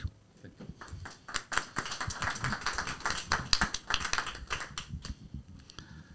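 Audience applauding, a dense patter of hand claps that begins just after the start and fades out near the end.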